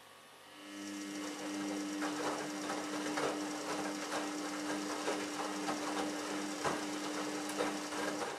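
Samsung Ecobubble WF1804WPU washing machine drum turning in the cold main wash. The motor's steady hum starts about half a second in, with wet laundry tumbling and splashing inside the drum.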